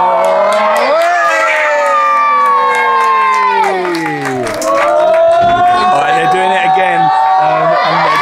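A crowd of spectators and young players cheering with long, drawn-out shouts from several voices at once, celebrating a cup win. The cheering dips briefly about four seconds in and swells again.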